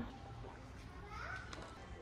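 Faint shop background with a child's distant voice rising briefly about a second in.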